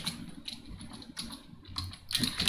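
Computer keyboard being typed on: a few separate, fairly faint keystrokes.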